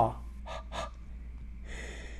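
A man breathing in between sentences: two short breaths about half a second in, then a longer inhale near the end. A low steady hum runs underneath.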